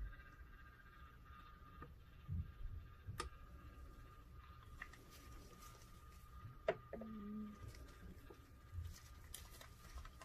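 Faint, steady whine of a small cup turner motor slowly rotating a wine glass, with a few sharp clicks and soft knocks from handling.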